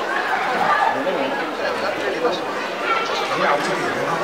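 People talking in a hall, voices overlapping in continuous chatter.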